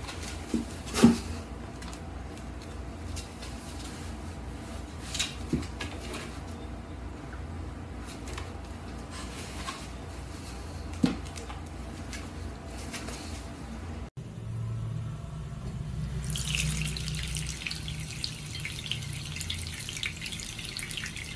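A few sharp thumps over a low steady hum, the loudest about a second in. Then, in the last few seconds, a bathroom tap running a thin stream of water into a sink.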